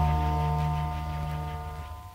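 The last held chord of an instrumental saxophone-and-strings arrangement, played from a vinyl LP, dying away and stopping shortly before the end.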